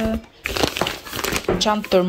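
Plastic crinkling and rustling for about a second as hands press and handle a plastic bag. A voice holds a drawn-out note at the start, and a high voice speaks near the end.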